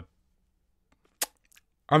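One sharp, short click a little over a second into a near-silent pause in a man's speech, with his voice starting again near the end.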